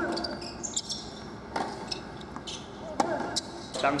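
Tennis ball being struck by rackets in a hard-court rally: three sharp hits about a second and a half apart.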